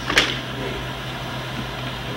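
A single sharp crack, like a clap or a smack, about a fifth of a second in. After it come a steady low hum and an even hiss.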